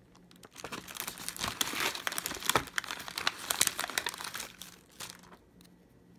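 Plastic Oreo cookie packaging crinkling and crackling as hands dig cookies out of it. It starts about half a second in, runs as a dense crackle with sharp clicks, and stops about four and a half seconds in.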